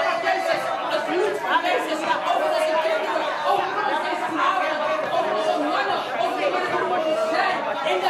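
Many voices praying aloud at once, overlapping with one another, with a woman's voice leading over a microphone and loudspeaker in the hall.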